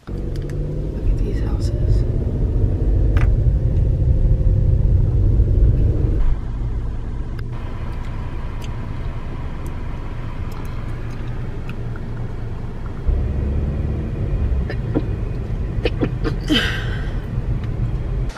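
Car cabin noise while driving: a steady low road and engine rumble, heavier for the first several seconds and then settling lower. A short laugh comes near the end.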